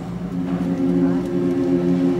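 Mixed choir's lower voices holding a steady low chord while the upper voices rest between phrases.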